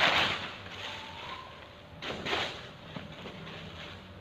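Rustling as gift clothes in their packaging are handled, in two short bursts about two seconds apart.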